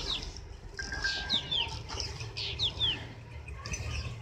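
Birds calling in the background: short, high chirps that slide downward, often in pairs, repeated about once a second, over a low rumble.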